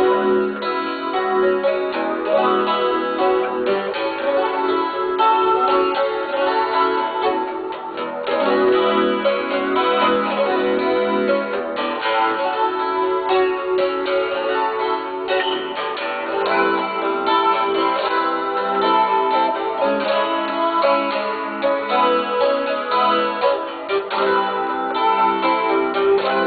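Solo jazz tune played on a small pear-shaped acoustic guitar: plucked melody notes over chords.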